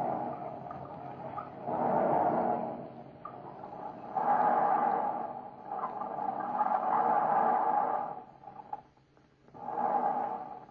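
Howling wind sound effect from an old radio drama recording, swelling and dying away in irregular gusts every couple of seconds.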